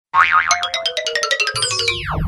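Intro jingle with cartoon-style sound effects: a wavering tone, then a quick run of short plinking notes stepping down in pitch, then swooping falls in pitch as a low bass beat comes in about a second and a half in.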